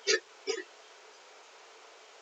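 A person hiccuping twice, about half a second apart: two short, sharp catches of the voice.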